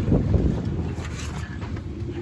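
Wind buffeting the microphone, a steady low rumble, with light handling noise as the camera is carried quickly over a dirt trail.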